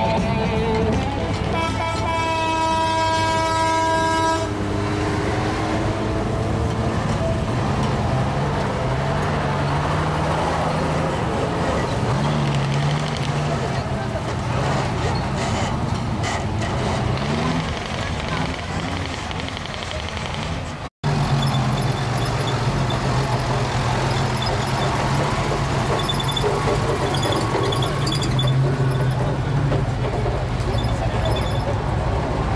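A truck horn blows one steady blast of about two seconds near the start. Then heavy military truck engines run, their note rising and falling as they move past, and the sound breaks off abruptly at an edit about two-thirds of the way in before the engine noise resumes steadily.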